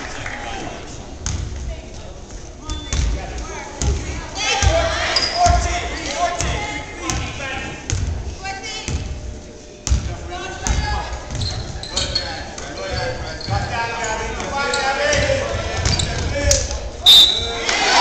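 A basketball dribbling on a hardwood gym floor amid sneaker footsteps and spectators' voices echoing in a gymnasium. Near the end a short, loud, high tone sounds and the voices grow louder.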